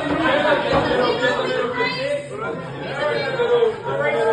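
Many young men's voices talking and calling out over one another in a group huddle, in a room that echoes a little.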